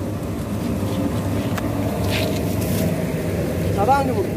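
Puffed-rice (muri) roasting machine running, a steady low mechanical noise with no pauses.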